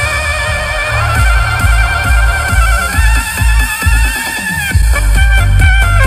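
Soprano saxophone playing a melody with a wide vibrato over a backing track with a heavy, steady bass beat. About three seconds in the saxophone slides upward in one long rising note, while the beat drops out for a moment and then comes back in.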